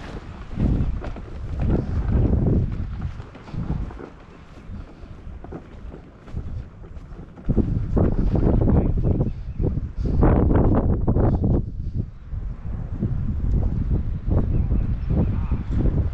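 Wind buffeting the camera's microphone in uneven gusts, easing for a few seconds in the middle and then picking up strongly again.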